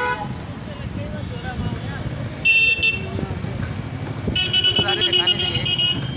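Vehicle horns honking in street traffic over a steady road rumble: a short, loud toot about two and a half seconds in, then a longer horn from about four seconds in to the end.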